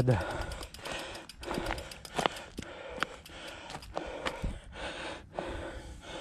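A mountain biker's breathing in soft puffs, about one every second and a half, with scattered sharp clicks from the bike and gravel.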